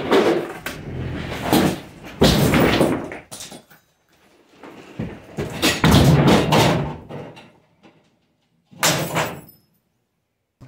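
Framed wooden walls sheathed in OSB toppling and slamming flat onto a concrete floor: about five loud crashes of timber and board, each trailing off, the last near the end.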